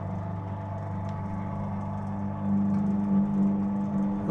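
Penny-operated automaton scene running, its mechanism giving a steady hum that grows louder about two and a half seconds in.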